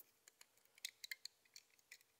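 Near silence with a few faint, light clicks in the second half: rubber loom bands being pulled back and released against a plastic loom.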